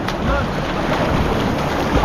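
Shallow breaking surf splashing and churning around a surfboard as it is pushed into whitewater, with heavy wind buffeting on the microphone.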